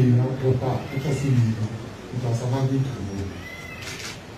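Speech: a man speaking into a handheld microphone in phrases, pausing near the end.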